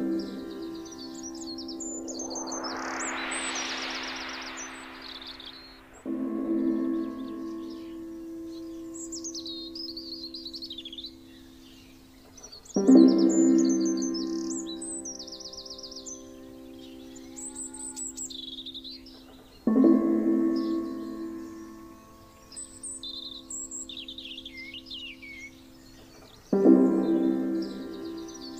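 Meditation background music: a ringing, bell-like chord struck about every seven seconds, three times, each fading slowly, over birdsong chirping. A hissing swell rises and dies away in the first few seconds.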